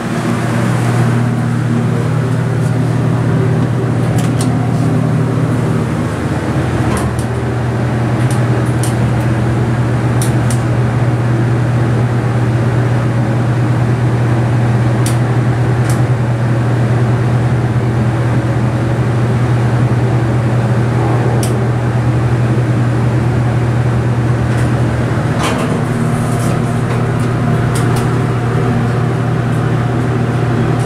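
Dover dry-type hydraulic elevator's pump motor starting about a second in and running with a steady low hum as the car rides up, the sound changing near the end as the car slows and stops, with a few clicks after.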